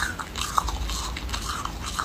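Close-up biting and chewing of a block of frozen foam ice, a run of crisp crunches and small crackles with one sharper crack about half a second in.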